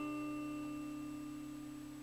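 A chord on a hollow-body electric guitar, played through a Vox amplifier, ringing out and slowly fading.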